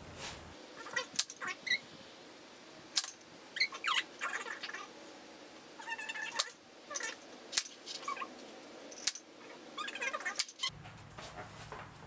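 Staple gun firing staples through wire mesh netting into a wooden gate frame: about five sharp clacks, irregularly spaced a second or more apart. High squeaky sounds come between them.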